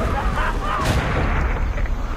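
A loud crash with heavy rumbling noise, a jet ski smashing through a hedge, with a sharp hit a little under a second in and shouting voices.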